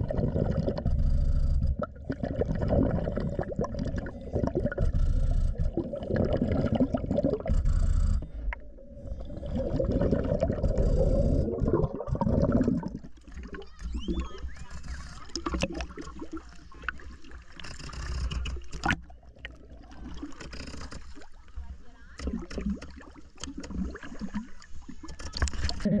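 Underwater scuba breathing: a diver's breaths and exhaust bubbles, a dense rumbling and gurgling for the first half. About halfway through it changes to a thinner mix of water splashing and lapping around the camera at the surface.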